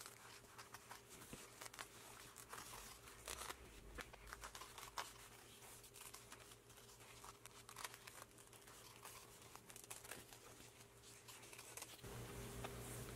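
Faint, irregular snipping and crinkling of sharp scissors cutting through sew-in foam interfacing, trimming it close along the edges of fabric pieces.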